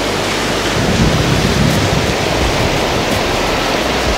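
Glacier-fed river rapids rushing over rocks: a loud, steady rush of white water with no break.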